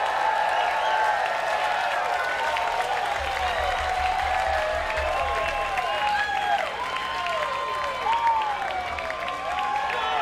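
Concert crowd cheering and applauding as a song ends, with many shrill calls that rise and fall in pitch over the clapping.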